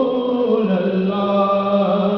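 A man's voice singing a naat unaccompanied through a microphone, drawing out one long wordless note that slides down just after the start and then holds steady.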